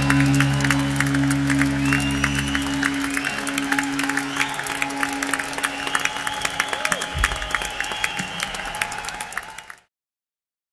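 A concert audience applauding and cheering as the band's last sustained chord rings out and stops about three seconds in. The applause fades out just before the end.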